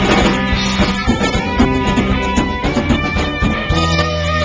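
Live rock band playing an instrumental passage with no singing: electric guitars and bass guitar over a drum kit, loud and steady.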